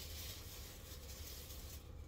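Faint, soft rustling of something being handled, strongest at the very start, over a low steady room hum.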